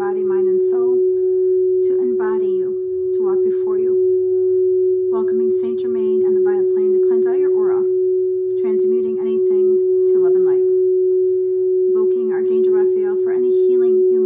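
A single steady tone held unbroken throughout, a meditation drone, with a woman's voice speaking in short phrases over it.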